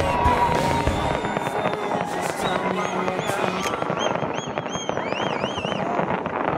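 Fireworks display bursting and crackling continuously. In the second half a run of high, wavering whistles rises and falls in quick succession.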